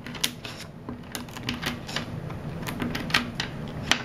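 Zen Magnets neodymium spheres clicking in a quick, irregular series as a card is wedged between their rows, splitting a flattened sheet of magnets into straight strips.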